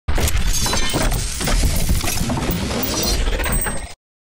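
Channel logo-reveal sound effect: a loud crashing, shattering sting with many sharp impacts over a heavy low rumble. It cuts off abruptly just before four seconds.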